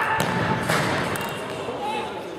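Futsal ball kicked hard in a shot at goal: a sharp thud just after the start, then a second, broader impact about half a second later.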